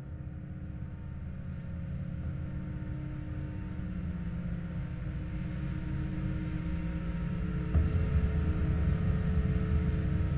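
Dark ambient drone: a low rumble with several steady held tones above it, slowly swelling louder, with a soft low hit about eight seconds in.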